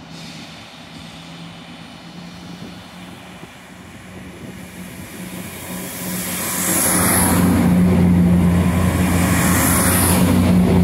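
Northern passenger multiple unit passing close along the platform: a steady low hum that swells, turning into a loud rumble of running gear and wheels with a high hiss about six seconds in.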